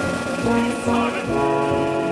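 Opera orchestra playing, with brass to the fore; a new sustained chord comes in just over a second in.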